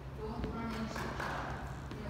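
Indistinct, low speech over a steady low hum, with a light tap about half a second in.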